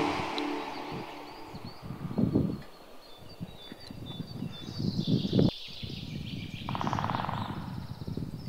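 Outdoor ambience: small birds chirping, with a short rapid trill near the end, over low thumps and rustles of wind and movement on the microphone.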